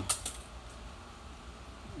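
Costume jewelry clinking as gloved hands pick through it in a plastic bin: a few light clinks near the start.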